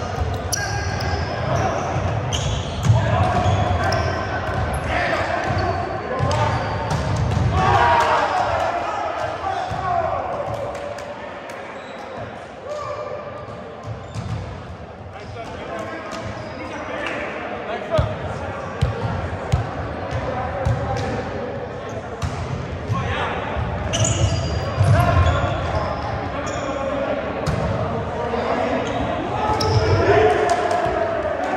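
Indoor volleyball play: sharp smacks of the ball being hit and striking the hardwood floor, with players shouting, all echoing in a large gym. It is quieter for a few seconds midway, between rallies.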